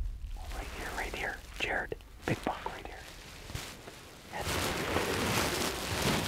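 Hushed whispering, growing louder and more continuous from about four seconds in.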